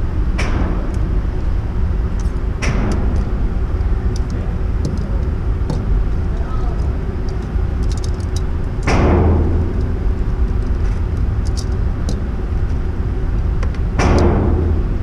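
Gunshots from other lanes of an indoor shooting range: four spaced shots, each with a long echoing tail, the loudest about nine seconds in and the last right at the end. A steady low rumble runs underneath, with light clicks of gear being handled between the shots.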